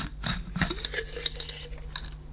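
Glass jar of a vacuum cleaner sprayer attachment being unscrewed from its Bakelite cap and handled: a few light clicks and scrapes of glass against plastic.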